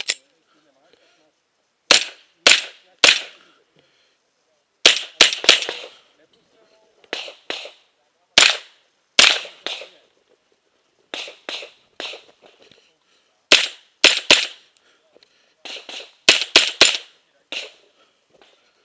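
Rifle shots from an AR-style carbine, fired in quick groups of two to four, about twenty in all, with short pauses between groups as the shooter moves from target to target.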